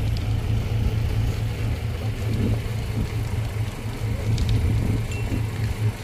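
A vehicle engine running steadily with a low, even hum.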